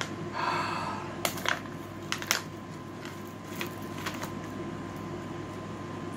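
A sigh, then a few sharp, scattered clicks and crinkles of a small clear plastic packet being handled, over a faint steady room hum.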